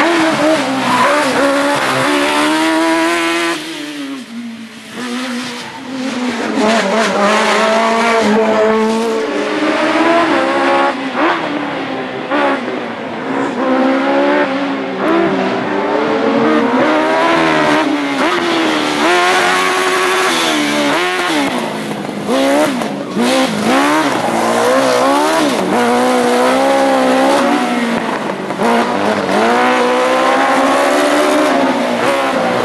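A sports-prototype race car's engine being worked hard through a slalom, its pitch rising and falling again and again as it accelerates, lifts off and shifts between the cones. It drops away briefly a few seconds in, then comes back loud.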